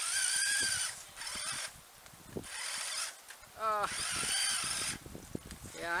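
Electric drive motor of a toy RC snowmobile whining in four short bursts as the throttle is pulsed, the sled barely moving in the slush with its batteries probably nearly spent.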